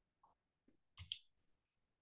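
Near silence with a faint, brief double click about a second in: a computer mouse clicked to advance a presentation slide.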